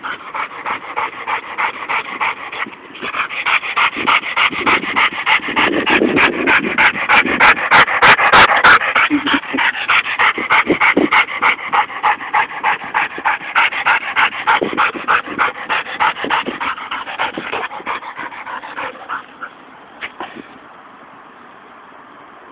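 Pitbull–Dalmatian mix dog panting in a fast, even rhythm, winded after about ten minutes of chasing a ball. The panting grows louder for the first few seconds, then fades away near the end.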